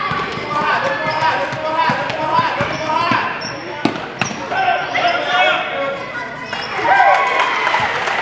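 A basketball being dribbled and bouncing on a hardwood gym floor, heard as scattered knocks. Indistinct voices from spectators and players run throughout.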